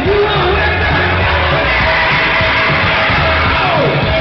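Live rock band playing loudly, with electric guitar, drums and a lead vocal, heard from within the audience with the crowd yelling along.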